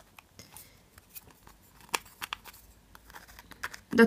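Two square plastic Hama Mini pegboards being fitted together by hand at their interlocking edges: a scattering of small, sharp plastic clicks and light scrapes.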